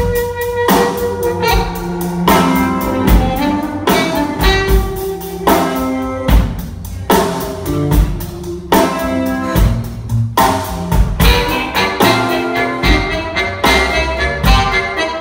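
Live blues band playing an instrumental passage: harmonica played into a vocal microphone over electric guitar, keyboard, upright bass and a steady drum beat.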